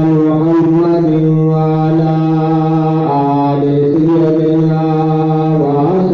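A man's voice reciting in a slow melodic chant, holding long notes that step down in pitch about halfway through and rise again near the end.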